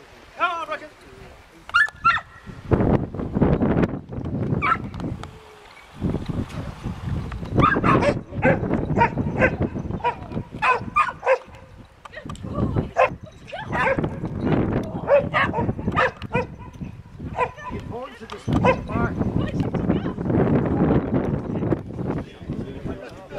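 Search-and-rescue dog barking repeatedly at a hidden person: the trained bark indication that tells the handler it has found the casualty. The barks are short and sharp and come in quick runs, thickest in the second half.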